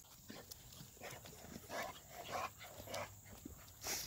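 An American Bully making a run of short, rough sounds, about five in three seconds.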